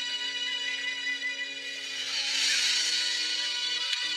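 Drama soundtrack music: sustained low notes under a wavering high melody, swelling a little past the middle.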